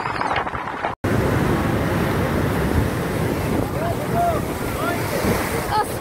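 Rough sea surf breaking and rushing up the beach, with wind buffeting the phone's microphone; the sound drops out for an instant about a second in. People's voices call out over the surf in the second half.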